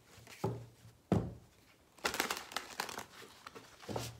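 A deck of divination cards handled and shuffled in the hands: two knocks about half a second and a second in, then a rapid run of crisp card flicks from about two seconds in.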